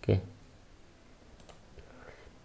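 A short spoken syllable right at the start, then a couple of faint computer mouse clicks about one and a half seconds in.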